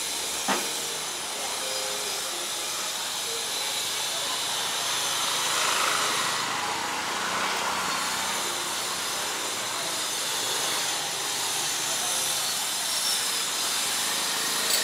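Street ambience: a steady hiss of traffic and open air, swelling in the middle as a motor scooter passes. A sharp click about half a second in.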